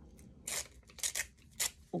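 A magazine page torn by hand in several short rips, to break it into small scraps.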